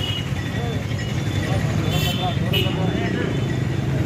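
Town street traffic: a steady low engine rumble from motorcycles and auto-rickshaws on the road, with people talking over it and two short high-pitched tones about two seconds in.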